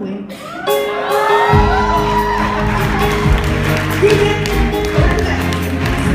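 Live band music on electric bass, electric guitars and drums. A held chord fades, then the full band comes in loud with drums and bass about a second and a half in.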